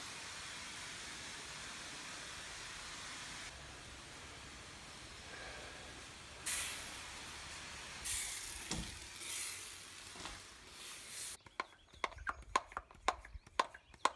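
Half-gallon hand pump sprayer hissing out thick concrete sealer in spells that break off and start again. Near the end comes a quick irregular run of clicks and knocks as the pump handle is worked to build pressure, which the thick sealer needs to keep the spray going.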